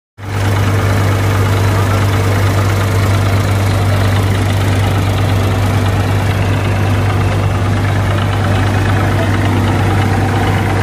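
Reinforce P-990 multicrop thresher running steadily while threshing mustard, driven by a Massey Ferguson diesel tractor working under load. The result is a loud, even machine drone with a strong low hum that does not change.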